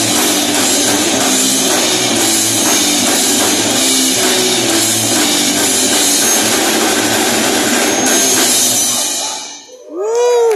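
Live rock band playing loudly: electric guitar, electric bass and a drum kit, with the drums prominent. The band stops about nine and a half seconds in, with the sound falling away quickly as the song ends.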